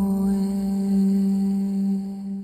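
Background music: a single low note held steadily with a chant-like or singing-bowl drone quality.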